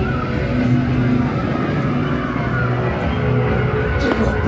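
Low, droning ambient music with long held notes that shift in pitch every second or so, played over the scare zone's speakers.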